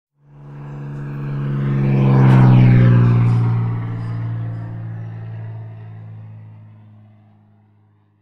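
Sound effect of a small propeller plane flying past. The engine drone swells to its loudest about two and a half seconds in, then fades away over the next five seconds.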